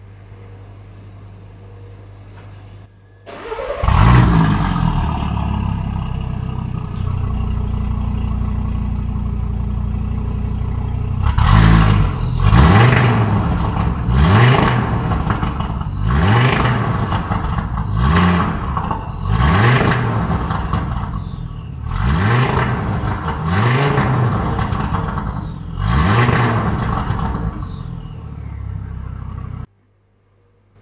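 Audi TT RS Plus's turbocharged 2.5-litre inline five-cylinder engine, heard at the exhaust: it starts about four seconds in with a short flare and settles to a steady idle. From about twelve seconds it is revved in a series of about ten quick throttle blips, each rising and falling back to idle.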